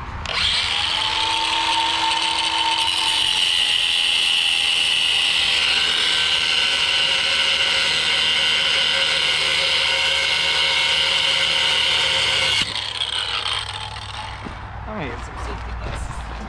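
Angle grinder with a cut-off wheel cutting through steel exhaust manifold bolts, a steady high whine. It starts about half a second in and stops sharply about three-quarters of the way through.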